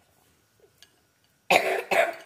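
A young girl coughing twice in quick succession, about one and a half seconds in, after a quiet stretch.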